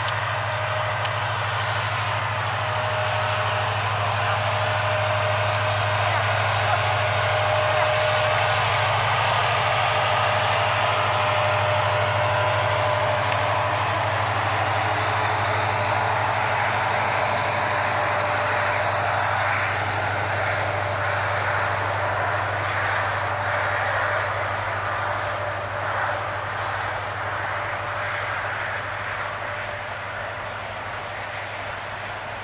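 Container freight train wagons rolling past, a steady rumble of wheels on the rails that eases off slightly toward the end.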